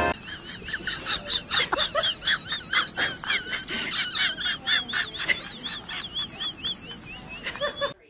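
A small bird chirping in a fast, steady run of short high rising-and-falling chirps, about four or five a second, cutting off near the end.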